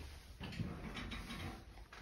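Faint rustling and shuffling of a person sitting down into an upholstered armchair, with a few soft creaks and ticks.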